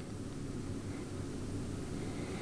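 Steady low background hum with a faint hiss: the room tone of a desk microphone, with no distinct events.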